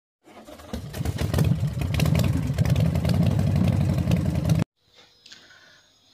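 An engine running, loud and pulsing, building up over the first second and then cut off suddenly about two-thirds of the way through.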